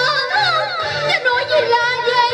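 A woman singing a cải lương Hồ Quảng (Vietnamese reformed opera) vocal line through a microphone, her voice wavering and sliding between notes over steady instrumental accompaniment.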